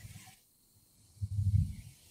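A short, low, closed-mouth hum of a man's voice, like a muffled 'mmm', heard over a video-call line about a second and a half into a pause in his talk.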